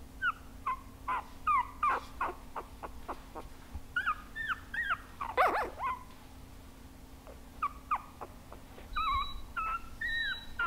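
Three-week-old Boston Terrier puppies whimpering, short high-pitched cries that fall in pitch, coming in scattered clusters with the loudest about five and a half seconds in.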